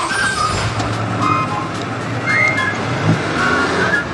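Old lorry engines running with a steady low rumble, with music and brief high chirps over it.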